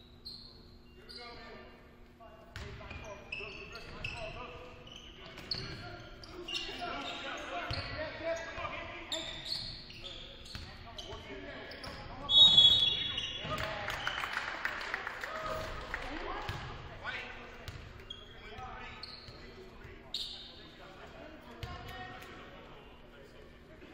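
Basketball game in a gymnasium: ball dribbling on the hardwood, sneakers squeaking and players and spectators calling out, echoing in the hall. About halfway through a referee's whistle blows loudly, followed by a few seconds of louder crowd noise.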